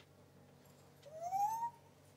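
African grey parrot giving a single short rising whistle about a second in.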